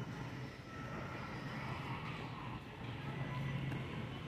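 Background noise of a busy warehouse store: a steady low hum under a faint, even bustle of distant activity.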